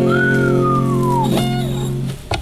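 Acoustic guitar chord left ringing, with a single whistled note over it that glides slowly downward in pitch for about a second.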